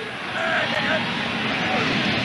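Steady noise from a football stadium crowd, with a few brief faint voices standing out from it about half a second in.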